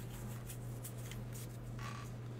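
Pokémon trading cards handled and slid one past another, giving a few faint papery swishes over a steady low hum.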